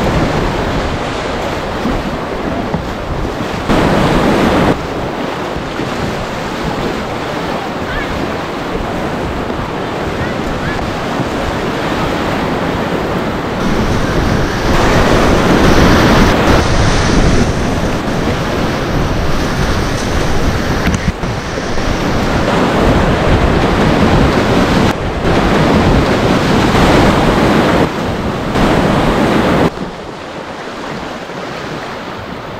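Whitewater rapids rushing loudly and steadily, with wind buffeting the microphone. The level jumps up and down abruptly a few times.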